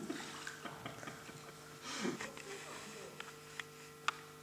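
Quiet room sound with a steady low hum, scattered small clicks and rustles, and a faint voice murmuring briefly about two seconds in.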